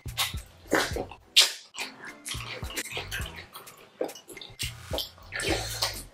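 Wet, sticky eating sounds of fufu with slimy ogbono soup: soft fufu being pinched off by hand and mouths chewing and smacking, heard as a string of quick wet clicks.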